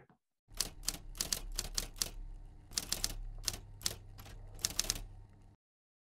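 Typewriter keys clacking in an irregular run of sharp strikes over a low hum. It starts about half a second in and stops suddenly near the end.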